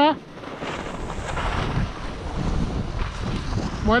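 Wind rushing over the microphone and skis sliding and scraping on packed snow while skiing downhill, the hiss swelling and easing a few times. A shouted "vuelta" is cut off at the very start and another begins at the very end.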